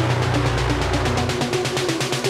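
Melodic house/techno track in a brief break: the kick drum drops out and a long, deep sustained bass note holds under fast ticking hi-hats and short synth notes, fading out about one and a half seconds in.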